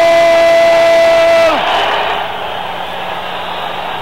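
A ring announcer holding the last word of 'Let's get ready to rumble!' into a handheld microphone as one long, steady, high-pitched call, which cuts off about a second and a half in. An arena crowd then cheers.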